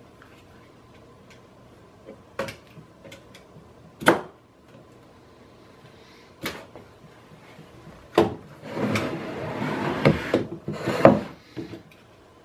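Utility knife scoring and prying at hot-glued parts of a fiberglass mold: a few sharp snaps one to two seconds apart, the loudest about four seconds in, then about three seconds of scraping and rubbing near the end with one more snap.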